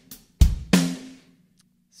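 Sampled acoustic drum kit, the wet version with room mics and reverb: a kick drum hit and then a snare hit about a third of a second later, the snare ringing out in a long reverberant tail.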